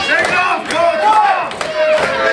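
Small crowd of spectators yelling and shouting, several voices at once, with a few sharp smacks among them.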